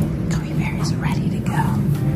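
A person's voice, soft and close to a whisper, over a steady low hum.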